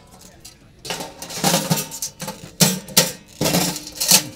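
Stainless steel parts of a 7-4 Ember portable grill clanking and scraping against each other as it is packed up and closed. There are a few metallic knocks and rubs, starting about a second in.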